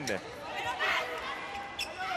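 Indoor arena crowd murmur during a volleyball rally, with a short sharp smack of the ball being hit near the end.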